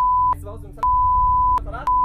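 Censor bleep: a steady beep tone masking swearing, broken twice by brief snatches of speech. It stops about a third of a second in, sounds again from just under a second to about 1.6 s, and comes back near the end.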